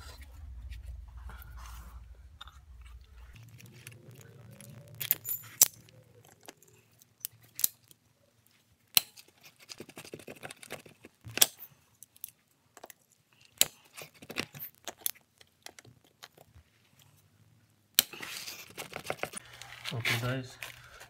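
Hand tools clinking, tapping and scraping on the rusted top mount of a Mercedes GL350 front air strut, a series of sharp metal clicks and knocks with short pauses between them, as the seized retaining ring and cap are worked loose.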